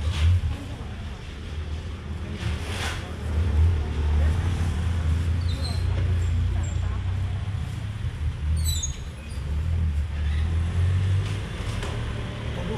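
Street-market background noise: a steady low rumble with a few short knocks and clatters, and faint voices behind.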